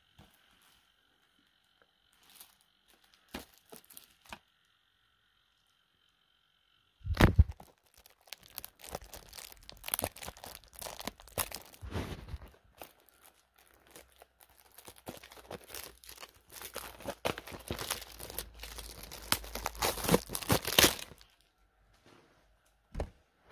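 A few faint clicks, then quiet; about seven seconds in, a thump starts dense, irregular crackling and rustling handling noise, like plastic or fabric being rubbed and crumpled close to the microphone, which stops about a second before the end.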